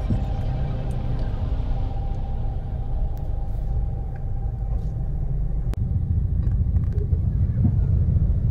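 Steady low rumble of a car's engine and cabin while it sits in heavy traffic, heard from inside the car. Music fades out over the first couple of seconds, and there is one sharp click with a brief dropout a little before six seconds in.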